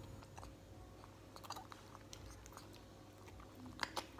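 Baby macaque sucking milk from a baby bottle's teat: faint, irregular wet clicks and smacks, with one louder click near the end.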